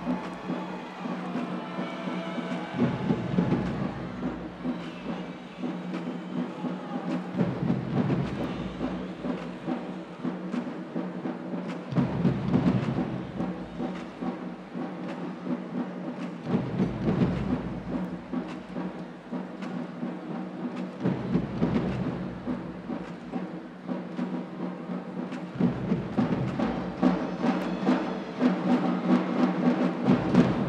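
Marching drumline percussion playing a steady rhythm, with deep low notes that come and go every few seconds over a sustained low drone.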